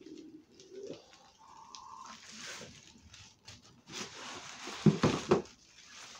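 Plastic air-pillow packing material crinkling and rustling as it is handled and pulled from a cardboard box, with a few louder thumps of the box about five seconds in.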